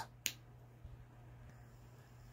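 One short, sharp click about a quarter second in, then a faint steady low hum with a couple of very faint ticks.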